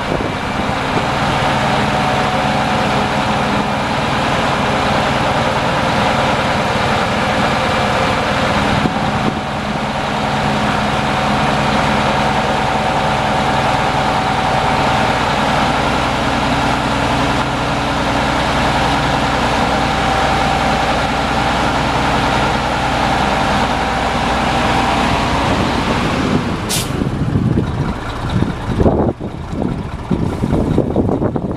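Mack E6 11-litre inline-six turbo diesel of a 1989 Mack RB688S dump truck running at a steady speed while the PTO-driven hoist raises the dump bed. Near the end the steady engine note drops away and a short sharp air hiss sounds.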